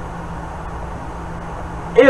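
Electric fan running steadily in the room, a constant even whir with a low steady hum.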